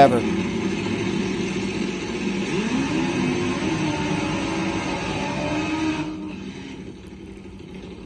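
Top Fuel nitro drag motorcycle engines revving through smoky burnouts, with a rising rev about two and a half seconds in; the sound fades away over the last two seconds. The audio is from an old VHS camcorder recording.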